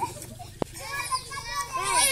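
Children's voices calling and chattering, with a single sharp click about half a second in.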